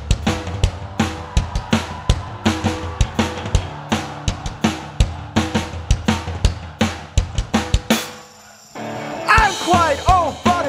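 Live band music driven by a drum kit: a quick, steady beat of kick and snare hits over held notes. The music drops away briefly about eight seconds in, then comes back in.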